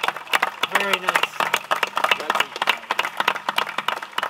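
A small group applauding, many separate hand claps, with a short spoken exclamation about a second in.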